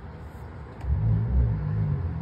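A low rumble that grows louder about a second in, preceded by a brief sharp click.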